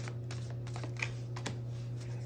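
Tarot cards handled in the hands as one is drawn from the deck: a few light, scattered card clicks and slides.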